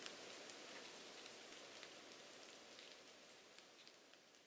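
Rain sound effect: a faint, steady patter of falling rain with scattered drop ticks, slowly fading out.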